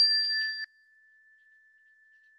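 A small bell rings with a clear high tone after being struck once, then cuts off abruptly under a second in, leaving only a faint thin steady tone.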